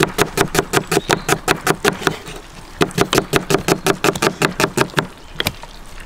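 A knife chopping rapidly on a wooden cutting board, about five strokes a second, with a short break about two seconds in before the chopping resumes.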